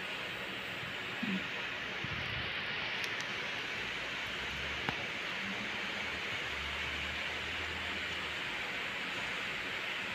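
Steady, even hiss of machines running while the patient sleeps: her breathing-mask machine and oxygen machine together with an air conditioner. There is a faint tick about five seconds in.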